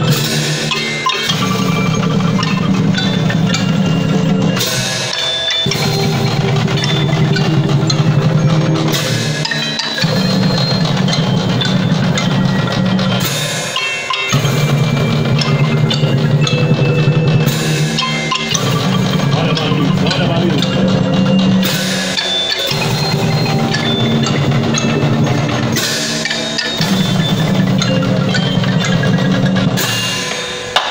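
Marching percussion band playing: marimbas and a vibraphone carry the tune over snare drums and cymbals. The music runs in phrases that break and restart about every four seconds.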